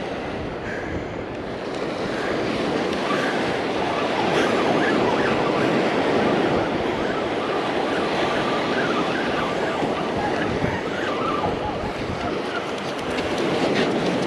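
Surf washing up the beach and wind on the microphone, while a spinning reel is cranked to bring in a hooked shark.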